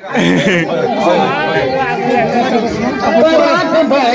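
Several people talking over one another, a busy chatter of voices close by.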